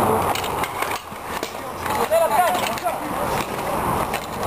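Roller hockey play: inline skate wheels rolling and scraping on the hard rink floor, with sticks clacking against the puck and each other.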